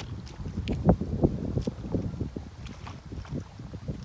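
A hoe blade sliding and pressing across wet mud on top of a rice-paddy levee to smooth it, giving a run of short wet squelches and scrapes, the loudest about a second in. Wind rumbles on the microphone underneath.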